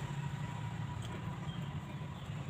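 Steady low background hum, with a faint thin high tone above it.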